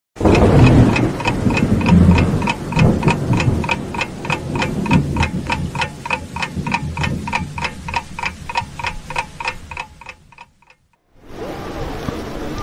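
Ticking-clock sound effect: evenly spaced, ringing ticks at about three a second that fade away towards the end, over a low rumble in the first few seconds.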